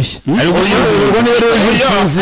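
A man's voice speaking continuously, with a brief break just after the start.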